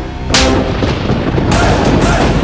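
Two loud, sudden cinematic impact hits about a second apart, each with a long noisy tail, laid over the film's music.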